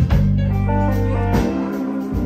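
Live blues band playing: electric guitar and Roland VK-7 organ over held low bass notes, with sharp drum hits at the start and again partway through.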